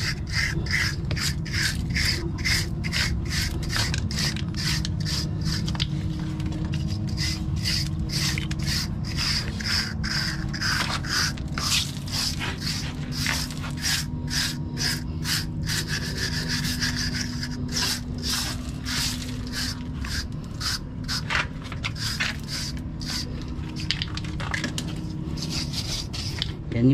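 Hand scraper with a flat metal blade scraping a concrete roof slab in quick repeated strokes, about three a second, loosening old, failing surface material at the wall joint before waterproofing. A steady low hum runs underneath.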